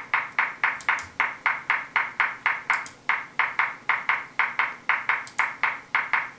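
Ableton Live's groove preview: a short pitched click repeating about four times a second in a swung eighth-note pattern from an MPC swing groove, with an occasional stronger, brighter click.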